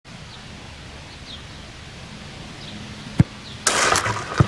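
Open-air background on a grass field with faint bird chirps, broken a little past three seconds by one sharp thump. A loud rushing noise starts just before the end.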